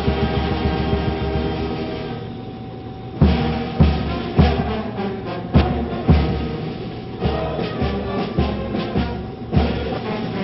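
Military brass band playing ceremonial music: held brass chords, joined about three seconds in by a steady bass drum beat a little under twice a second.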